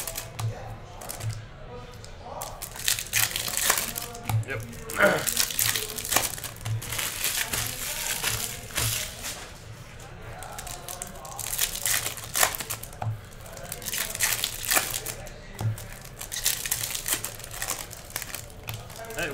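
Shiny foil wrappers of Bowman Chrome baseball card packs crinkling and tearing as packs are ripped open and the cards are pulled out and handled, with music playing underneath.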